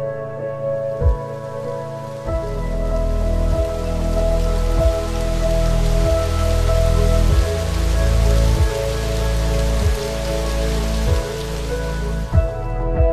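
Calm background music with sustained chords and a soft deep beat about every second and a quarter, overlaid with a steady rain-like hiss that fades in about half a second in.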